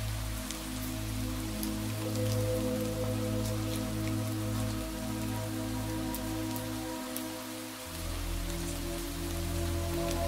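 Steady rain with individual drops heard as light clicks, over slow ambient meditation music of long held chords; the low note changes near the start and again about eight seconds in.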